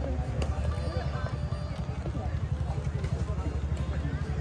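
A steady low rumble runs throughout, with faint voices in the background.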